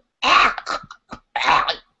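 A man laughing in several breathy, unvoiced bursts, two longer ones with short puffs between them.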